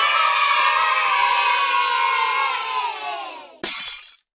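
A crowd of children cheering and shouting, dying away over the last second. Just before the end a sudden crash of breaking glass begins.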